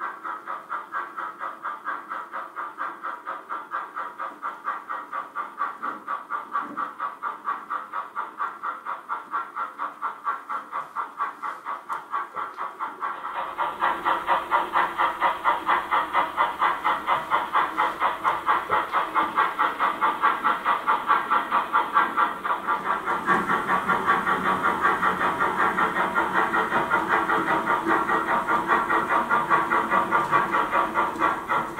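Chuffing sound of an H0-scale model steam tank locomotive: a steady rhythmic puffing of a few beats a second, with a hiss. It gets louder and fuller from about 13 seconds in.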